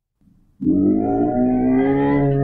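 Sound effect of a bear growling: one long, low, drawn-out growl that starts about half a second in, loud and steady in pitch.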